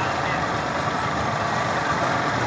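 Steady noise of vehicle engines running, an even wash of sound with no distinct events.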